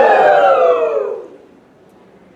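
Several voices crying out together in one long, loud wail that slides down in pitch, breaking off about a second and a quarter in.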